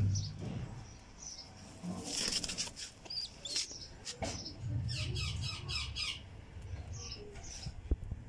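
Young fantail pigeon squab squeaking, with a quick run of high peeps about five seconds in.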